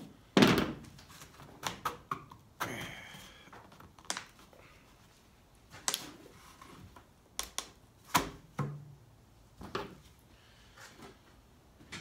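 Roof trim on a Cutlass being pried off with a flathead screwdriver: a string of sharp snaps and knocks, about ten at irregular intervals, as the brittle trim clips give way. The loudest come just after the start and about 8 seconds in.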